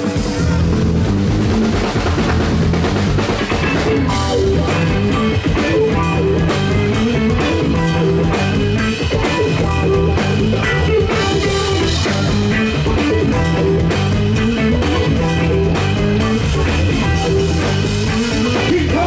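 Live rock band playing an instrumental passage: two electric guitars over a drum kit, with the cymbals coming in strongly about four seconds in.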